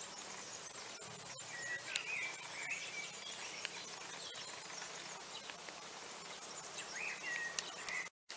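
Bird calls in woodland: short gliding, warbling notes, a few about two seconds in and another burst near the end, over a steady background hiss.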